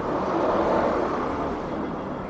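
A passing vehicle heard as a steady rushing hum that swells a little and then eases off.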